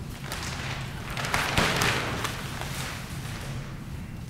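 Rustling and light knocks from the rendering being handled and brought out, swelling to its loudest about a second and a half in.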